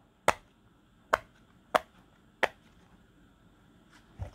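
Silicone push-pop (pop-it) fidget toy, its bubbles pressed in by a fingertip one at a time: four sharp pops in the first two and a half seconds, spaced about half a second to a second apart.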